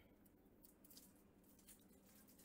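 Near silence: room tone, with two very faint ticks.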